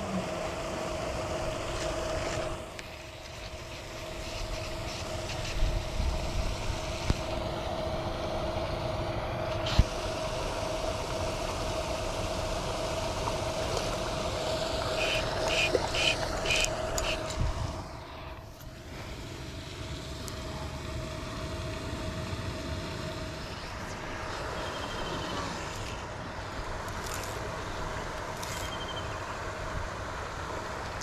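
A paddlewheel aerator on a fish pond running steadily, a motor hum over churning water, which fades about three quarters of the way through. About halfway, a short run of quick clicks from a fly reel as a hooked fish is played near the bank.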